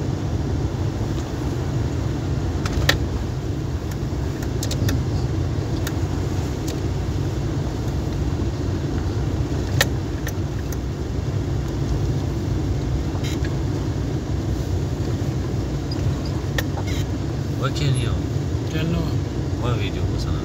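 Steady low rumble of a vehicle's engine and tyres heard from inside the cabin while driving on a rough, wet road, with a few sharp clicks and knocks as it goes, the loudest about three and ten seconds in.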